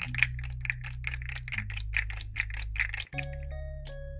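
Background music: a bass line with a steady ticking beat, cutting out briefly about three seconds in and resuming with bell-like synth notes.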